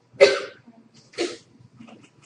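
Two short coughs, about a second apart.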